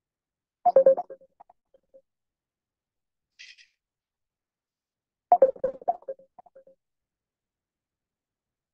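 A short electronic jingle of several tones plays twice, about four and a half seconds apart, with a faint brief hiss between them.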